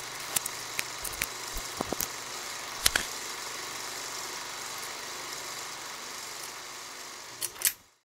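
Scattered sharp clicks and small knocks over a steady hiss, the loudest about three seconds in and a pair just before the end, after which the sound cuts off.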